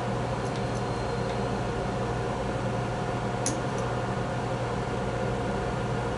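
Steady low room hum, with a few faint light clicks as the small lathe's table and spindle are adjusted by hand.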